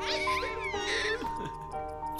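A baby vocalizing: two high, wavering calls in the first second and a half, over steady background music.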